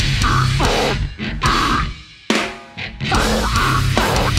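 A heavy band playing live on drum kit and electric guitars. The music breaks up about a second in and stops short around two seconds in, leaving one sharp hit that rings out, and the full band comes back in a second later.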